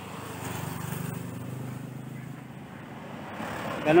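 Engine of a passing motor vehicle heard in the background, its low hum swelling about a second in and then fading.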